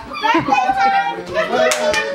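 Overlapping chatter and laughter of adults and children, with one sharp click near the end.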